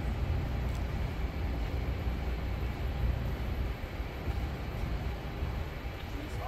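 Steady low rumbling background noise inside a large warehouse, with no distinct events.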